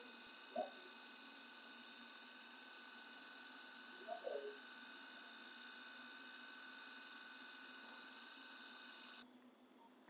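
Faint steady hiss and hum with several thin high whining tones, which stop abruptly a little before the end. Two brief faint sounds come through early and near the middle.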